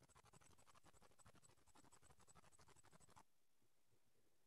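Near silence: a faint, rapid scratchy crackle that cuts off suddenly about three seconds in, leaving only a steady faint hiss.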